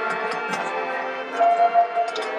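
High school marching band playing sustained held chords, with light percussion strokes over them. A higher held note swells louder about a second and a half in.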